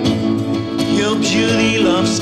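Acoustic guitar strummed steadily under a man's singing voice in a live folk song.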